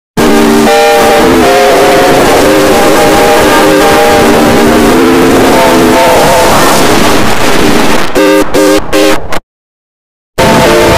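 Very loud, heavily distorted electronic jingle with a melody, its pitch-shifted copies layered in the 'G Major' effect and buried in harsh clipping noise. It breaks up into choppy stutters near the end and then cuts off abruptly.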